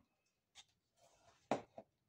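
Paintbrush and metal paint tin being handled: a few short knocks, the loudest about one and a half seconds in, with a brief rub just before it.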